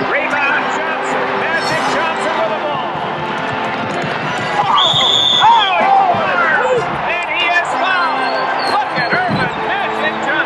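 Basketball game play: sneakers squeaking on the court and a ball bouncing, under a constant wash of arena noise.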